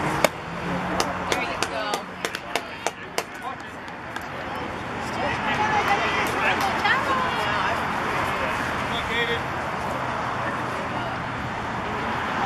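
A pitched baseball pops sharply into the catcher's mitt, followed by a quick run of hand claps. Spectators' voices talking and calling out follow.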